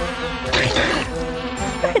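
Cartoon buzzing of a giant bee-elephant's wings as it hovers, a steady insect-like drone.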